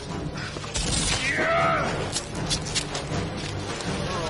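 Film sound of a man crashing through dense jungle undergrowth, with branches and fronds cracking and snapping. The cracking is loudest from about one to two seconds in, over a low rumble and background score. About a second and a half in comes a short rising-then-falling cry.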